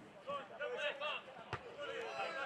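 Men shouting during a football match, with the dull thud of a football being kicked about one and a half seconds in.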